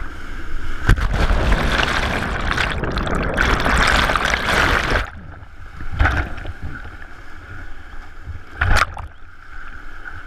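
Whitewater rapid rushing and crashing right at the microphone, with waves breaking over it. The roar is loud for the first five seconds, then drops suddenly to a lower rush broken by two splashes, about a second in and near the end.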